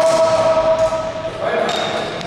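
A long, held shout that rises briefly at the start, holds steady and fades out at about a second and a half. Under it are a few sharp clacks of floorball sticks and the plastic ball on the wooden floor.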